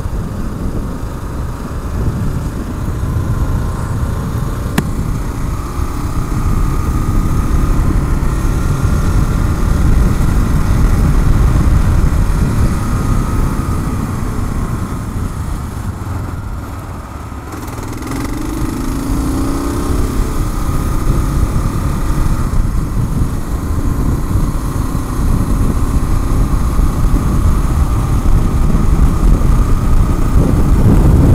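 Kawasaki KLR650 single-cylinder engine running under way, largely covered by heavy wind noise on the microphone. The noise eases off briefly about two thirds in, then the engine note rises as the bike accelerates and the wind noise builds again.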